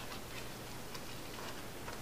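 Faint light clicks and ticks as small boxes of .22 rimfire cartridges are picked up and handled.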